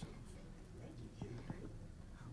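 Faint, indistinct murmur of low voices in a meeting room, with a few soft clicks.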